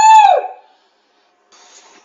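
A man's voice ending a falsetto rooster-crow imitation: a long held high note that bends down and stops about half a second in. Near silence follows, with a faint hiss near the end.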